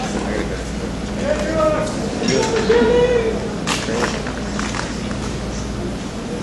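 Indistinct voices talking over a steady low hum, with a few sharp knocks and clicks, the loudest a little past the middle.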